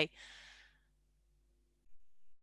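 A woman's soft breath out, a sigh lasting under a second right after she stops speaking, then near silence with a faint hum.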